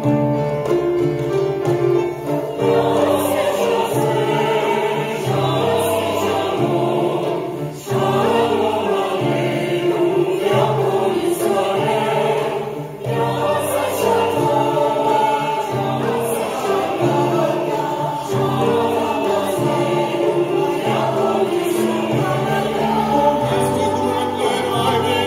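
Mixed choir singing a choral arrangement with piano accompaniment, the voices holding notes that change every second or two.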